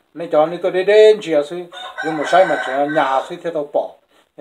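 Rooster crowing loudly at close range, a long call broken by a short pause about halfway.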